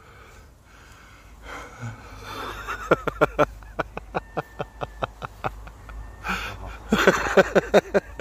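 Breathy, wheezing laughter in quick pulses, about five a second, starting about three seconds in, with a second burst near the end.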